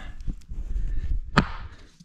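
Low handling rumble as the camera is moved down to floor level, then a single sharp knock on the laminate floor about a second and a half in.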